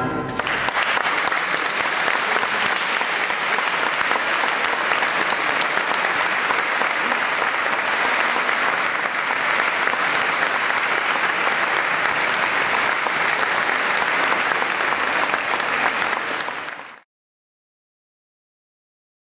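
Audience applauding steadily, starting as the tango's final note dies away. The clapping fades quickly and cuts to silence about a second before the end.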